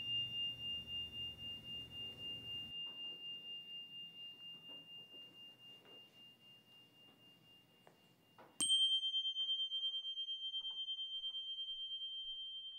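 A high, pure metallic chime tone rings on and slowly fades with a pulsing shimmer. About eight and a half seconds in, a second, slightly higher chime is struck and rings out the same way.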